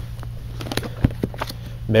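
Sheet-music books being flipped through by hand in a display bin: paper and card covers rustling, with a few sharp clicks, over a steady low hum.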